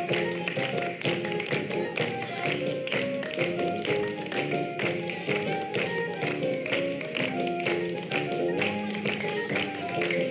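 Upbeat music with a melody of held notes, and a crowd of children clapping along in a steady beat.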